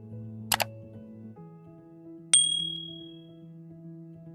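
Subscribe-button animation sound effects over soft background music: a quick double mouse click about half a second in, then a bright notification-bell ding a couple of seconds in that rings briefly and fades.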